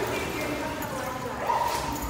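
Dogs barking and whining, with long high calls; a new one begins about one and a half seconds in.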